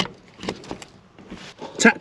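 A sharp click as a plug is pushed home into a 10A surface-mounted power socket, followed by faint scattered clicks and rustling as the cable is handled.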